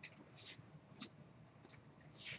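Near silence: room tone with a few faint sharp clicks and a short soft hiss.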